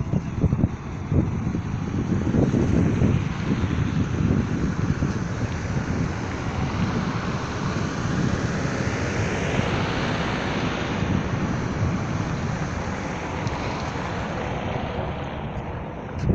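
Wind buffeting a phone's microphone, a gusty low rumble over a steady rush. A broader rushing noise swells to a peak a little past the middle and then fades.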